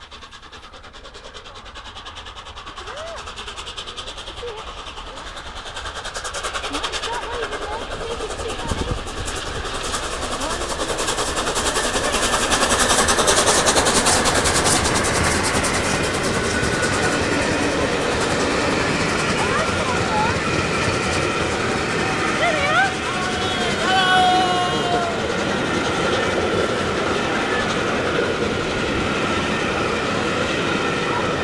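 Steam locomotive 60163 Tornado, a three-cylinder LNER Peppercorn A1 Pacific, approaching at speed and passing close by. The sound grows steadily louder, is loudest about halfway through as the engine goes by, then holds loud as its coaches roll past with their wheels clattering on the rails.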